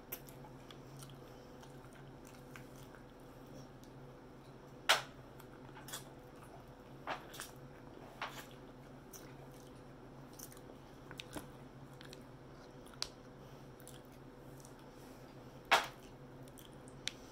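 Close-up chewing and biting of a crispy fried pork chop: irregular wet mouth clicks and crunches. The sharpest, loudest clicks come about five seconds in and near the end, over a steady low hum.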